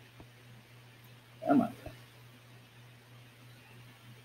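A man's brief wordless vocal sound, about one and a half seconds in, over a steady low hum. There are a couple of faint clicks.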